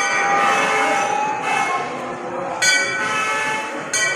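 Hanging metal temple bells struck by hand, about four strikes, each leaving a long ringing tone that overlaps the next.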